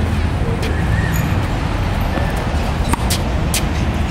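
Tennis ball strikes and bounces on a hard court: a few sharp pops, most of them about three seconds in, over a steady low rumble.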